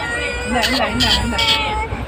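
Newborn baby crying in long, drawn-out, high-pitched wails, one after another.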